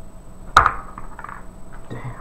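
A single six-sided die rolled onto the game table: one sharp clack about half a second in, then a few lighter clicks as it settles.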